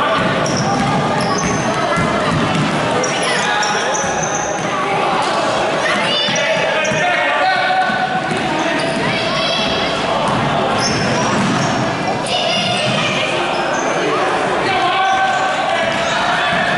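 A basketball being dribbled on a hardwood gym floor, with short high squeaks of sneakers from running players. Voices shout and call throughout, echoing in the large hall.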